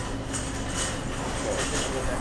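Supermarket background sound: a steady low mechanical hum, with faint rustling in the first second.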